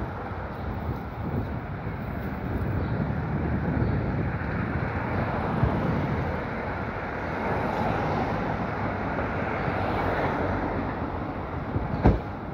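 Wind buffeting a phone's microphone, a steady rushing rumble, over the background noise of a city street.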